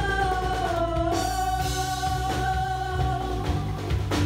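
Live worship band: several women singing together into microphones, holding one long note, over keyboard, guitar and a drum kit.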